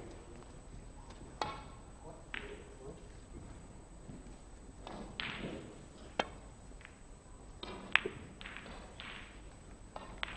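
Snooker shot: the cue tip strikes the cue ball with a sharp click about six seconds in, and a louder, ringing ball-on-ball click follows about two seconds later.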